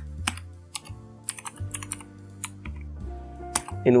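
Computer keyboard keys clicking in an irregular run of keystrokes as text is typed, over quiet background music.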